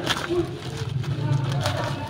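A plastic courier pouch crinkling and rustling as it is pulled open by hand, with sharp crackles just after the start and again near the end, over background voices.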